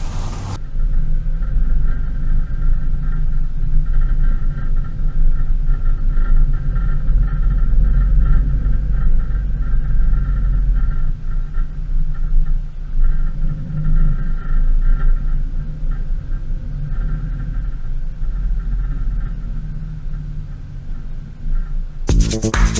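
Van driving along a road: steady low engine and road rumble, with a steady higher whine over it.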